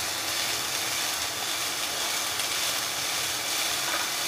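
Chopped onion and cabbage sizzling in hot oil in a frying pan while a spatula stirs them and scrapes across the pan: a steady hiss with the rubbing scrape of the stirring.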